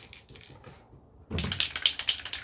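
Aerosol spray paint can being shaken, its mixing ball rattling in quick, even clicks. The rattle is faint at first and turns loud and fast about two-thirds of the way in.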